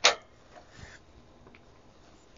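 A single sharp click at the output terminals of a bench DC voltage/current generator as a test lead is handled there, followed by a few faint handling sounds.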